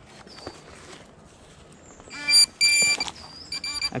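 Electronic signal tone from metal-detecting gear sounding in three short buzzing bursts in the second half, signalling a buried metal target.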